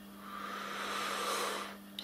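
A woman's long breathy exhale close to the microphone, a sigh that swells and fades over about a second and a half, over a steady low electrical hum.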